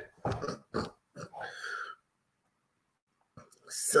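A man chuckling in three short bursts of laughter through the nose and breath.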